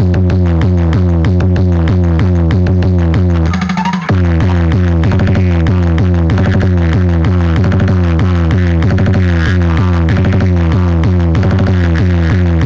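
Loud electronic dance music with a heavy, steady bass and a fast repeating pattern, played through a tall stacked wall of JBL-loaded DJ speaker cabinets set up for a sound-box competition. About three and a half seconds in, the bass drops out briefly under a rising sweep, then comes back in.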